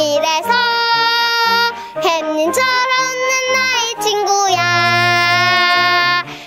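A child singing a children's song over a backing track with a steady bass line, phrases ending on held notes, the longest near the end.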